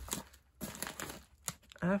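A padded mailer and a clear plastic bag of LEGO parts crinkling and rustling in the hands as the package is opened, in uneven crackly strokes.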